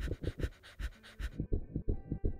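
Rapid, panting breaths of a panic attack over a fast, pounding heartbeat sound effect. The breathing stops about a second and a half in, leaving the quick heartbeat on its own.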